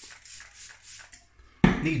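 A person chewing a mouthful of deep-fried chips close to the microphone, in soft crunches about four a second. A man's voice cuts in near the end.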